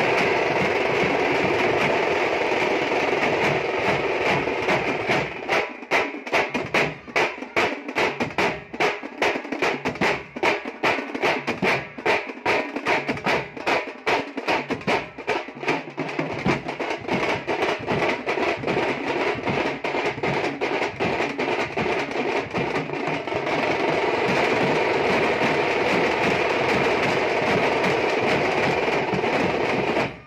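Thamate folk drum troupe playing a fast rhythm together: stick-beaten frame drums and barrel drums over a large bass drum. From about five seconds in the beats come as sharp, rapid separate strokes, and from about twenty-three seconds the playing thickens again into a dense roll.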